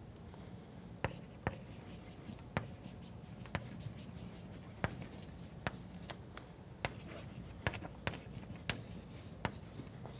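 Chalk writing on a blackboard: about a dozen sharp, irregular taps and short scratches as words are chalked onto the board.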